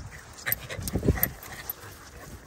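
Dogs playing and chasing on grass, with a few short dog noises about half a second and about a second in.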